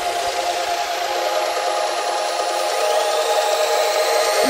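Wave dubstep breakdown with the bass dropped out: sustained synth chords over a hissing noise wash, and a rising sweep building from about two-thirds of the way in.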